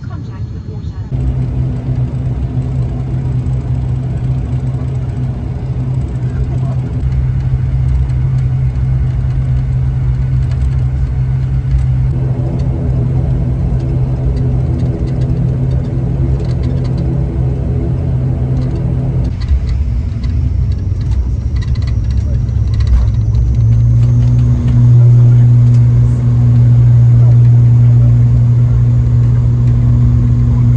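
Propeller and engine drone of an ATR 72-600 twin turboprop, heard from inside the cabin: a steady low hum during the taxi that swells louder about three-quarters of the way through as power comes up for the takeoff roll.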